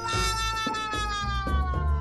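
Background music with a steady beat, over a long cartoonish sound effect that slides slowly down in pitch for about two seconds.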